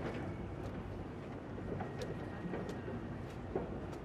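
A boat engine running steadily with a low rumble, with a few sharp clicks spread through it.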